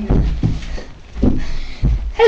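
Four dull, irregularly spaced thumps with rustling between them: footsteps and bumps of people moving about right next to the microphone.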